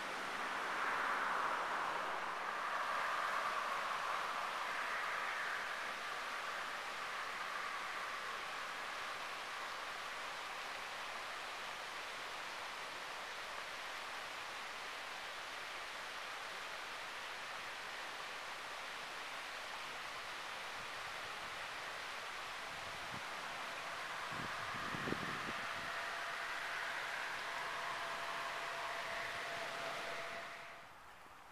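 Steady outdoor rushing hiss beside a road bridge over a creek, swelling a little in the first few seconds and again near the end, with a few faint low knocks shortly before that second swell.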